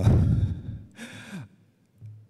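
A man sighs heavily into a close microphone, a loud breathy exhale with a rumble of breath on the mic. About a second in comes a short voiced breath falling in pitch, like a brief chuckle.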